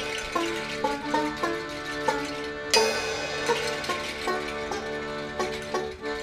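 Small live acoustic band playing: accordion holding sustained chords while a banjo is plucked over it, with a cymbal crash about three seconds in.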